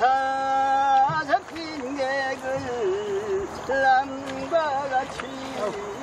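Korean folk singing of a rice-transplanting work song: a voice holds one long note at the start, then goes on in a wavering, sliding melodic line.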